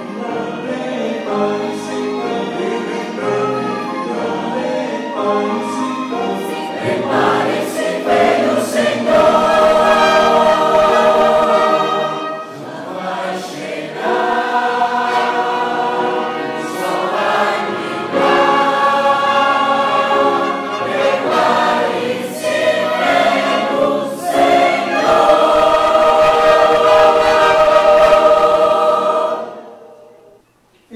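A mixed choir sings with a small male vocal group at microphones, in held chords that swell in several loud climaxes. The last chord breaks off just before the end.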